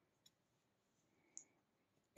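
Near silence: faint room tone with two very faint clicks, one about a quarter second in and one just past the middle.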